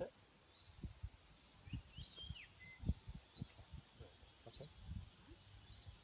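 Faint birdsong: scattered short chirps and whistled calls, over a run of low, dull thumps.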